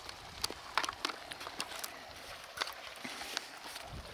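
Footsteps of a person walking on dry grass and patchy snow: irregular faint crunches and clicks.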